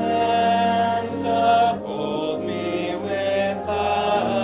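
Congregation singing a hymn in unison with organ accompaniment: sung notes held and moving syllable by syllable over sustained low organ tones.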